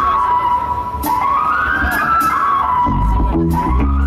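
Live rock band playing the opening of a song: a lead line that slides up and down in pitch, about once a second, over cymbals. Kick drum and bass come in about three seconds in.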